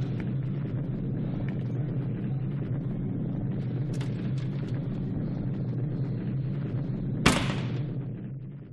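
A steady low rumbling drone, and about seven seconds in a single sharp loud bang with a short decaying tail.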